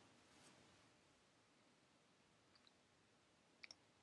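Near silence: room tone, with two faint clicks near the end.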